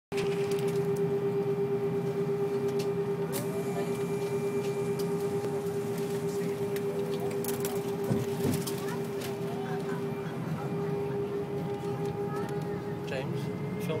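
Steady hum inside an Airbus airliner cabin on the ground: one strong held tone over a lower drone, with faint passenger chatter and a brief knock about eight seconds in.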